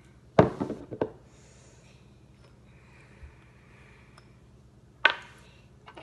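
Two hard knocks on a tabletop as a hot-sauce bottle is handled and its cap taken off: one about half a second in, one near the end, with faint room hum between.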